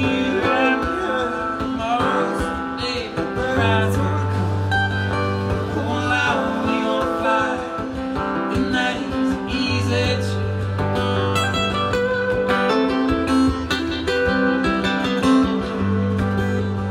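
Two acoustic guitars playing an instrumental break: steady strummed chords with a wavering melody line over them.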